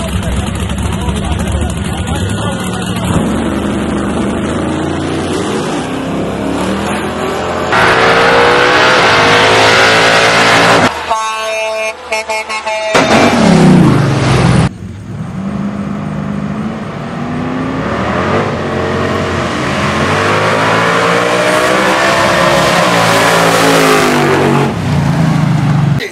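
Drag-race cars' engines revving and accelerating hard down the strip in a few short cuts, the pitch climbing as they launch and dropping away as they pass. Crowd voices and shouting run underneath.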